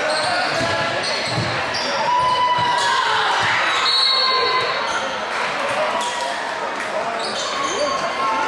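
Crowd chatter echoing in a gym during a basketball game, with the ball bouncing on the hardwood floor and a few short sneaker squeaks.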